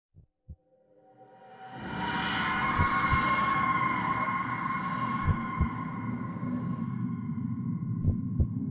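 Horror film score: a sustained eerie drone of held tones swells in over the first two seconds and holds, with a double heartbeat thump repeating about every two and a half seconds.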